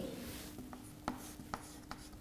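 Chalk writing on a blackboard: faint, with a few short, sharp taps of the chalk about half a second apart in the second half.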